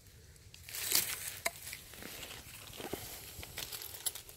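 Faint, irregular rustling and crinkling of hands handling a small plastic geocache tube and paper among dry fallen leaves, with a few soft clicks, the strongest rustle about a second in.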